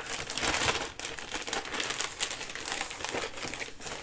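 Plastic poly mailer bag crinkling and rustling as it is folded up around a cardboard DVD mailer inside it.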